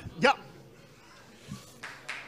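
A man says a short 'ja' into a microphone, then quiet hall room tone with a faint rustle near the end.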